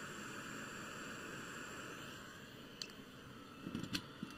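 Hot-air rework station blowing a faint, steady hiss of air onto a surface-mount crystal while its solder reflows. The hiss eases off a little about halfway through, and a couple of faint clicks come near the end.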